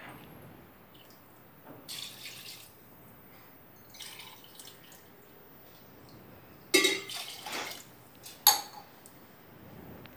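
Water poured from a tumbler into an aluminium pressure cooker full of cut vegetables, in several short pours, the loudest about seven seconds in.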